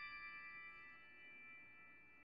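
The fading tail of a bell-like chime from a closing music sting: several sustained tones ring and die away slowly, growing very faint.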